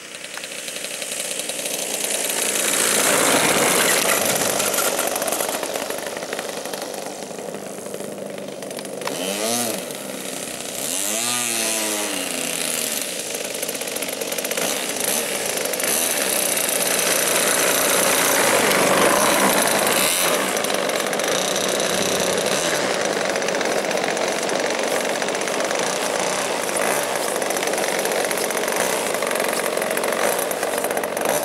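Single-cylinder two-stroke petrol engine (MVVS 26cc) of a 1.8 m Yak-54 radio-controlled model plane, landing and then taxiing on grass. It grows louder as the plane comes in close, gives two brief rev blips about ten seconds in, then runs steadily and loud as the plane taxis up.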